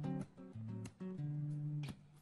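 A live band playing an instrumental passage led by guitar, a run of held notes without singing.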